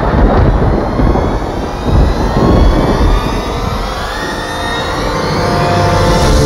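A loud dramatic sound-effect rumble, like rolling thunder, carrying on from a boom, with a whoosh that slowly rises in pitch. Near the end, held organ-like music tones come in.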